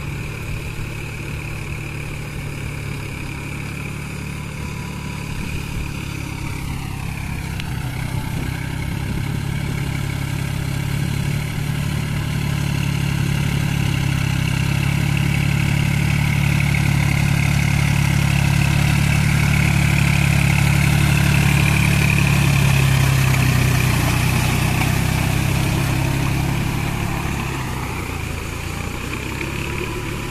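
New Holland 4710 Excel tractor's three-cylinder diesel engine running steadily under load as it pulls a rotavator through flooded mud. It grows louder as the tractor comes close, is loudest about two-thirds of the way through, then fades as it moves away.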